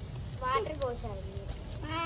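Young puppy whining: a short falling cry about half a second in and another brief whine near the end.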